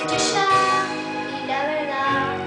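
A young girl singing a Spanish-language pop ballad, holding notes and bending one near the end.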